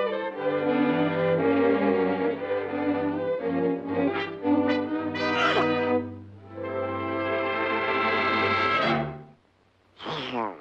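Orchestral cartoon score led by brass, playing short phrases and then a long held chord that cuts off suddenly near the end.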